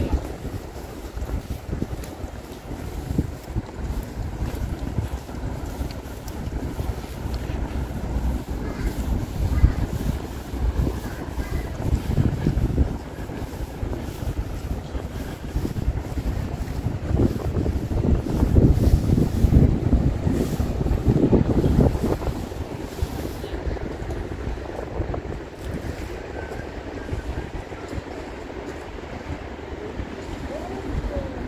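Wind buffeting the microphone in irregular, low rumbling gusts, strongest a little past the middle.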